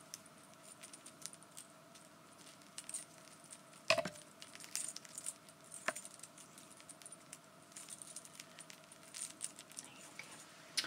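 Small metal thumb cuffs handled close to the microphone: light metallic clinks and clicks throughout, with a sharper click about four seconds in and another about two seconds later.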